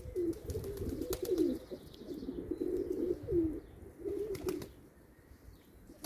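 Domestic hünkari pigeons cooing, a run of short overlapping coos one after another that dies down in the last second or so.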